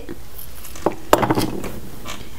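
Metal flatware jewelry pieces clinking as they are handled: one click just before a second in, then a brief run of light clicks.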